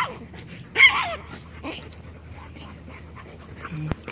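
Dogs in rough play, giving two short high-pitched yips: one right at the start and one about a second in.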